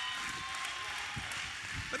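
Faint voices of a church congregation, with soft low footfalls of a man walking on carpet.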